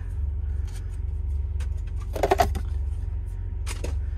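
A metal trading-card tin being opened by hand, its lid worked off with a few light clicks and a louder scrape about two seconds in. Underneath is a steady low rumble from the car.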